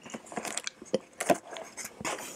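Thin plastic packaging tray crinkling and clicking as a mini mochi ice cream ball is worked out of its cup by hand. It is a quick run of clicks and rustles with one louder snap a bit over a second in.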